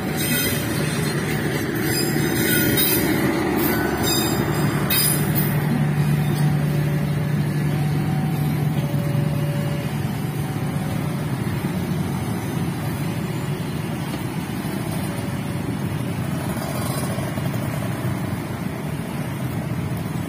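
Passenger train's last cars rolling over a level crossing, the wheels clattering and hissing on the rails for the first few seconds. Then a crowd of motorcycle engines runs as riders cross the tracks.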